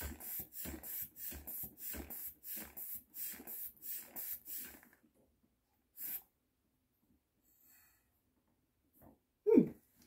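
Hand-squeezed rubber bulb air pump of a Boxio Wash sink, pumped about twice a second, each squeeze a short puff of air, meant to pressurise the fresh-water canister, which is not working: water does not flow from the tap. The pumping stops about halfway, with one more squeeze shortly after, and a brief louder sound comes near the end.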